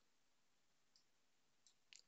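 Near silence: room tone with a few faint clicks from computer input, about a second in and near the end.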